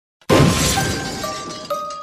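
Shattering, crashing sound effect that hits suddenly about a third of a second in and fades out over a second and a half, with a few high ringing tones coming in over the fading crash.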